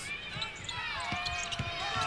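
Sneakers squeaking on a hardwood basketball court, with many short sharp squeals as players cut and the dull bounce of the ball, over arena crowd noise. A steady tone comes in about a second in.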